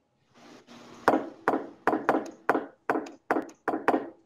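Acoustic guitar strummed in a bossa nova accompaniment: a run of short chord strokes, each dying away quickly, starting about a second in. Heard over a video-call line.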